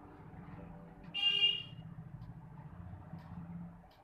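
A single short horn toot, about half a second long, about a second in, over a low steady rumble.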